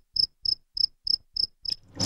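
Cricket chirping in a steady, even rhythm: short high chirps, about three a second.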